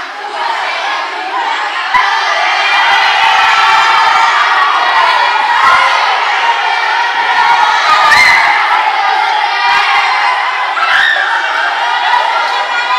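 A large group of children shouting and cheering together, rising in loudness about two seconds in and staying loud.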